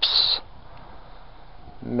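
A man speaking: the hissing 's' at the end of a word, a pause with only faint outdoor background, then speech again near the end.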